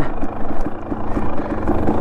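Dirt bike engine running steadily as the bike rides along a dirt trail, heard from the rider's camera.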